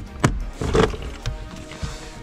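Background music, with a sharp plastic snap about a quarter second in and a weaker crack just under a second in, as the clips holding a car's centre-console side trim let go.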